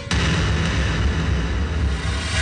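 A dramatic soundtrack boom: a sudden hit that opens into a deep, sustained rumble.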